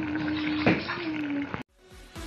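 Sardine and bottle gourd stew simmering in a pot with a faint watery bubbling, under one steady hummed note; a single click about two-thirds of a second in, and the sound cuts off abruptly near the end.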